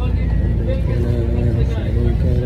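Passenger bus under way, its engine and running making a heavy, steady low rumble, with a voice chanting or speaking in held, drawn-out tones over it.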